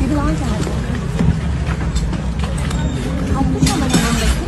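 Unclear chatter of people close by over a steady low outdoor rumble, with a brief rush of hiss near the end.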